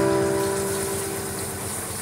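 The last held note of the music fades out, leaving a vehicle engine idling with a low, steady pulse.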